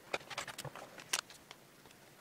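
A cardboard box and plastic-bagged frame parts being handled and set down on a cutting mat: a quick run of crinkles and light knocks in the first second or so, the loudest about a second in, then a few fainter ticks.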